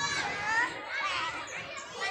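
A crowd of young schoolchildren's voices, many overlapping at once, during a hand-holding circle game.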